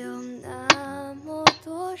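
Two sharp strikes, a little under a second apart, of a hatchet head hitting the top of a bamboo pole to drive it into the ground as a stake, over background music with sustained notes.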